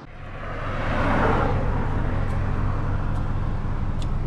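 Road traffic: a passing vehicle swells to its loudest about a second in and settles into a steady noise, over a low, steady engine hum.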